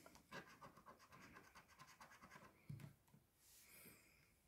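Coin scraping the coating off a scratch-off lottery ticket in quick, faint, repeated strokes, with a soft bump about two-thirds of the way through.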